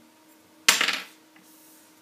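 One sharp clatter of small hard plastic robot-kit parts knocking on the tabletop about two-thirds of a second in, dying away within half a second.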